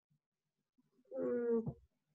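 About a second of dead silence, then a single drawn-out hesitation sound from a voice, like a held "ehh" while thinking of an answer. It lasts under a second, holds a steady pitch and drops at the end.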